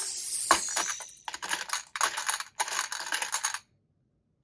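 Small plastic beads clattering in a metal muffin-tin cup in several short rattling bursts, cutting off suddenly near the end.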